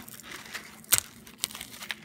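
Roasted peanut shells being cracked open by hand, a dry crackling with small snaps and one sharp crack about a second in.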